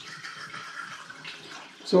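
Spring water poured from a large plastic bottle through a plastic funnel into a plastic fermenting bottle, a steady trickling splash as the bottle is topped up with water.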